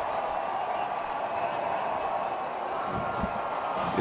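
Large stadium crowd cheering, a steady wash of many voices.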